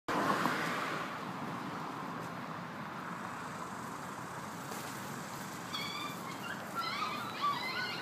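Steady hiss, louder in the first second. About two-thirds of the way in, puppies start crying in short, high-pitched squeals and whimpers that repeat through the end.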